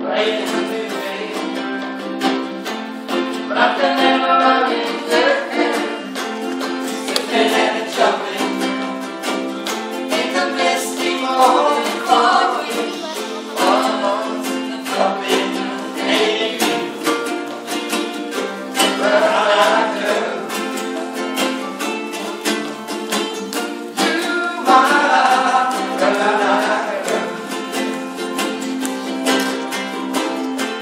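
Several ukuleles strumming chords together in a steady rhythm, with voices singing phrases at intervals over them.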